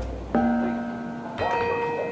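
Two bell-like chime notes, the first about a third of a second in and a higher one about a second later, each ringing on and fading slowly, over a low rumble that dies away in the first half second.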